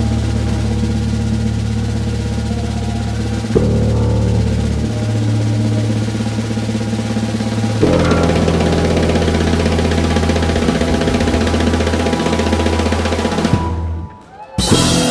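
Jazz-rock trio of electric bass, electric guitar and drum kit playing a loud, busy passage: the drums and cymbals are played hard over long held bass notes that shift twice. The band stops abruptly just before the end.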